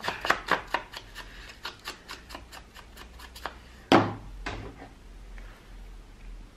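Quick dabbing taps as the edges of a paper card are inked with distress ink, about five taps a second, then a loud knock about four seconds in and a lighter knock just after.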